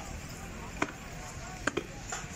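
Tear gas shelling: one sharp crack a little under a second in, then two more close together near the end, over the steady noise of a crowd in the street.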